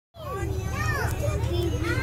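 A young child's high, sliding vocalizing, without words, over the steady low rumble of a moving train carriage.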